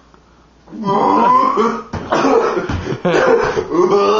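A man coughing hard after gulping down a spicy homemade drink of hot sauce and steak sauce. The coughing comes in three rough bouts of about a second each, starting about a second in.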